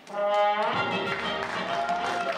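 A theatre pit band's brass plays the song's loud closing notes, entering suddenly and filling out into a full chord about two-thirds of a second in. Audience applause begins to build under it.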